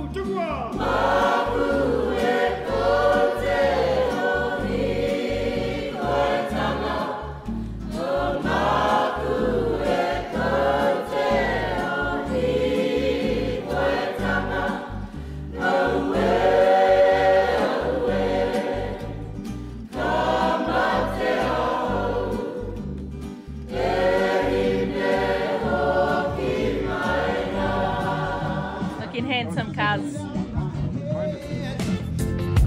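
A choir singing in long phrases, with brief breaks between them.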